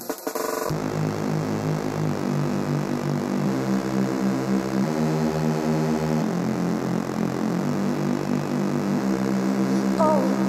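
Electronic music: sustained synthesizer chords with no drum beat, the chord changing every second or two.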